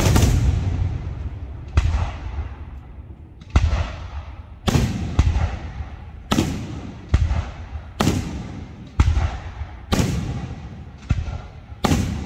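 Aerial firework shells bursting in steady succession, about one sharp bang a second. Each bang is followed by a long rolling echo that fades before the next.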